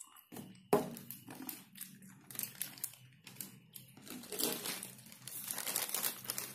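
A plastic toy packet and paper food wrapping crinkling as they are handled, in an irregular run of crackles that grows denser in the second half.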